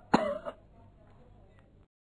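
A man's single brief vocal burst just after the start, lasting about a third of a second.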